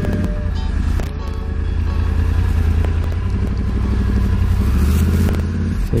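Yamaha R1 crossplane inline-four engine idling with a steady, fast, pulsing low note as the bike creeps forward to the fuel pump. The note firms up a little in the second half.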